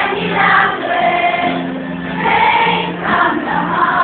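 A choir singing with music, moving through long held notes.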